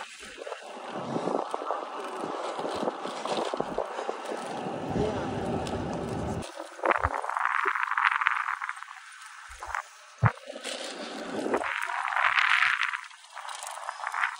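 Wind rushing over the microphone of a moving road bicycle, with a fluctuating, gusty noise. About halfway through, the deep rumble drops out and a thinner hiss with surges is left, broken by a single knock.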